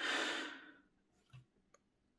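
A man's short audible breath, a sigh of about half a second that fades out, followed by near silence with a couple of faint ticks.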